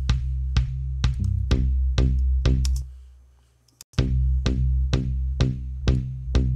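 Electronic kick drum loop playing about two beats a second, pitch-corrected to the song's key and given a high-end EQ boost for punch, over a steady low bass tone. About three seconds in the playback stops, the low end fading away, and after a click it starts again about a second later.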